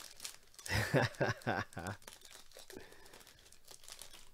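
Foil wrapper of a Bowman Draft jumbo baseball card pack being torn open and crinkled, loudest in the first two seconds. It is followed by quieter crinkling and light clicks as the stack of cards is slid out.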